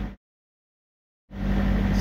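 Thermo King SB-230 trailer reefer unit's diesel engine running steadily with a low hum while it charges a truck's flat battery through jumper cables. The sound cuts out completely for about a second in the middle, then the same hum returns.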